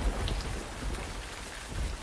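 Rain falling: a steady, even hiss with a faint low rumble.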